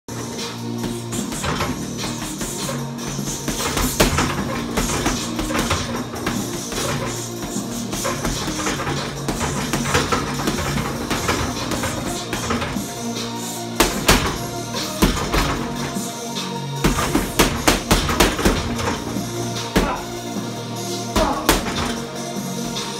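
Music plays throughout, with sharp thuds scattered over it and a quick run of them in the last third: gloved punches landing on an Everlast heavy bag.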